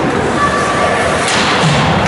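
Ice hockey game in play in a rink: a sharp knock of puck, stick or boards a little over a second in, over a steady din of the rink and shouting voices.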